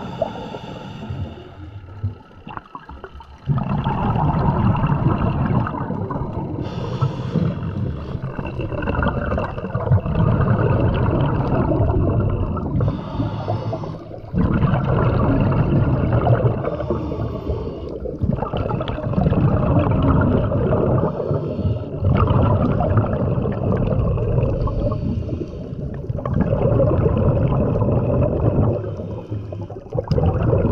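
Muffled underwater water noise, a continuous low rumble with brief dips, heard through the waterproof housing of a camera carried by a swimming spearfishing freediver.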